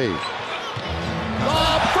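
Game sound from a basketball arena: crowd noise and the ball bouncing on the court, with a commentator's voice coming back in near the end.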